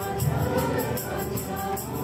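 A congregation singing a Nepali hymn together, with a tambourine keeping a steady beat.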